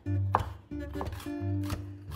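Kitchen knife chopping pickled gherkins on a wooden cutting board: several sharp taps of the blade on the board, over background music with held bass notes.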